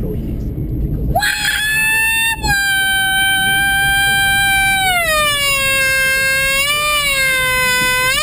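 A young girl's voice holding one long, high-pitched vocal sound, the way she thinks a car should sound. It starts about a second in, breaks briefly, then holds steady, drops in pitch about five seconds in and rises again near the end.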